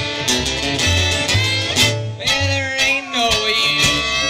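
Live string band playing an instrumental passage in a bluegrass vein: acoustic guitar strumming over pulsing bass notes, with a fiddle line sliding into a long held note in the second half.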